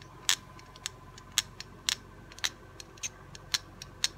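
A small handheld knife sharpener drawn stroke by stroke into the serrations of a knife blade, making short sharp clicks about twice a second as the edge is touched up.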